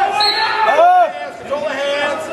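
Shouting voices of coaches and spectators echoing in a large gym during a wrestling bout, with dull thuds of bodies on the mat.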